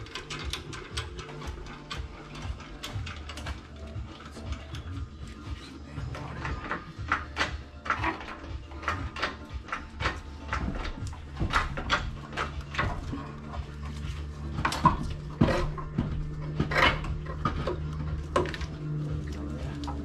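Scattered metallic clicks, knocks and clanks of hands and tools working around an engine slung on a hoist chain, coming more often and louder after the first few seconds, over a steady low hum.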